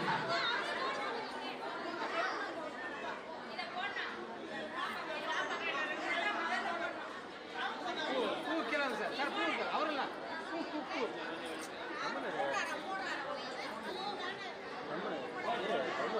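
Crowd chatter: many voices talking over one another at a steady level, with no single speaker standing out.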